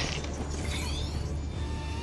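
Film sound effects: the steady low mechanical hum of an elevator car in motion, with a brief metallic squeal about half a second in.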